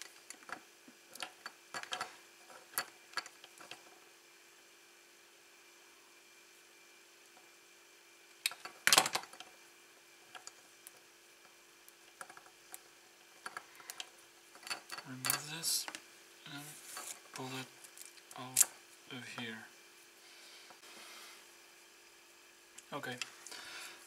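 Small metal hand tools clicking as wires are handled, with one sharp snap about nine seconds in as cutters cut through the small circuit board inside the soldering iron.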